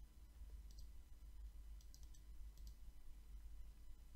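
Near silence with a few faint, short clicks scattered through, typical of a computer mouse being clicked.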